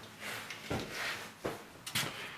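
A few light clicks and knocks over faint background noise, like handling sounds as someone moves about a workbench.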